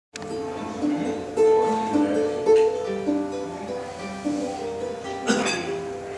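Ukulele picked note by note in a repeating pattern, playing a song's introduction, with a brief noisy burst near the end.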